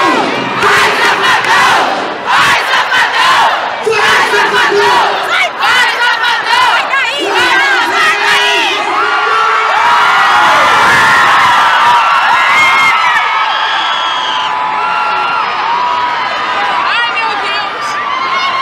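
Concert crowd cheering and screaming loudly, many high-pitched shrieks overlapping one another.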